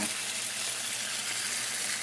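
Reuben sandwiches frying on a hot electric griddle set to 375 degrees: a steady sizzling hiss with faint scattered crackles.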